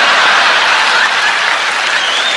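Large live stand-up audience applauding steadily after a punchline.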